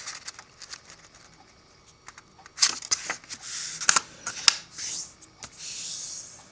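A sheet of origami paper rustling and crinkling as it is folded in half diagonally and the crease pressed flat with the fingers: a run of short, crisp rustles and clicks starting about two and a half seconds in.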